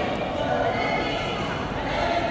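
Players' voices in a large indoor badminton hall, no clear words, with one high-pitched voice held for about a second in the middle.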